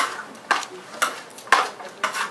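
Metal tongs knocking against a large clear salad bowl as a salad is tossed, a sharp clack about every half second.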